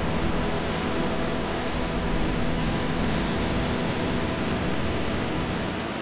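Swollen, muddy river in flood rushing over rocks: a steady, unbroken rush of water.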